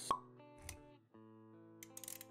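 Intro-animation music with sustained notes and a sharp pop just after the start, then a low soft thud; the music dips out briefly about a second in and comes back.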